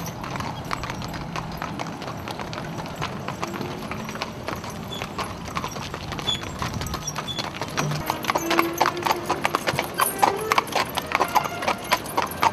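Two horses' hooves clip-clopping on asphalt as they pull a cart. The footfalls grow louder and sharper in the second half.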